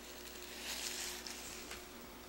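Faint rustling of hands handling a tiny silicone baby doll and setting it down on a fluffy blanket, with a soft swell about a second in, over a steady faint hum.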